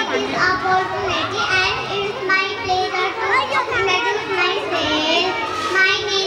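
Children's voices talking and chattering, with no pause, one child's voice carried over a microphone.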